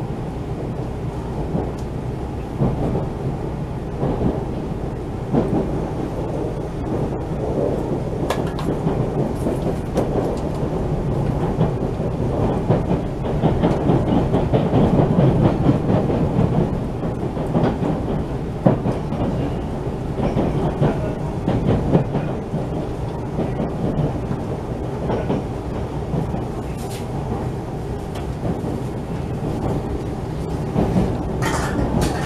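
Running noise of a train heard from inside the carriage: a steady low rumble of wheels on rail, with irregular clicks and clacks over rail joints and points. It swells somewhat in the middle.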